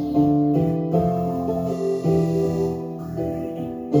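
Yamaha Motif XF keyboard workstation played live, a run of held chords that shift to new notes several times.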